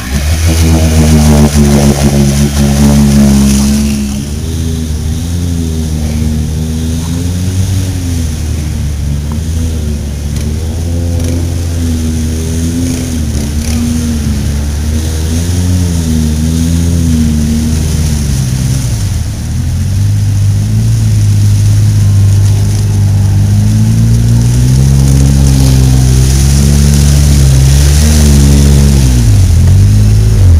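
Polaris RZR side-by-side engine revved hard over and over while stuck in a deep mud hole, its tyres spinning in the water, the pitch rising and falling repeatedly. In the second half a lower, steadier engine note holds, with more revs near the end as a side-by-side drives through the water.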